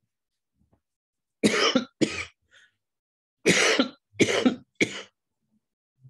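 A man coughing five times in two fits, two coughs and then three, a man who says he is a little sick.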